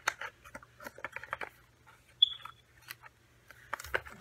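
Nitrile-gloved hands handling and opening a cardboard cologne box to slide the bottle out: a run of irregular small clicks, taps and scrapes, with one short high squeak about two seconds in.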